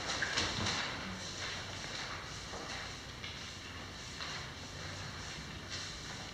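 Papers and folders being handled at meeting tables: scattered light rustles, taps and small knocks over low room noise.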